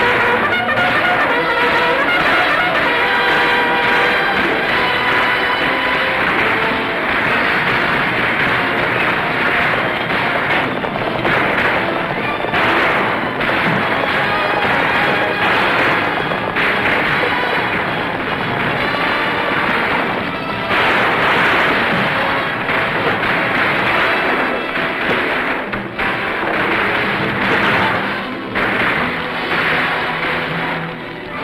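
Loud orchestral film score over the dense din of a battle, with gunfire.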